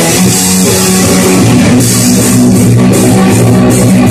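Live rock band playing loud: electric guitars and bass guitar hold chords over a drum kit, with cymbal hits coming in rhythmically about halfway through.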